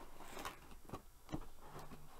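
Faint rustling and a few soft clicks of a cardboard subscription box being opened by hand.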